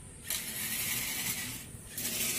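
Small yellow plastic DC gear motors driving a homemade metal-plate robot car on a concrete floor: a gear whir and rattle that starts a moment in, with a short pause near the end.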